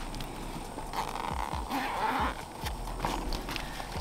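Handling of a soft fabric tackle bag, with a zipper pulled open for about a second of rasping, and a few soft knocks of the bag and its contents being shifted.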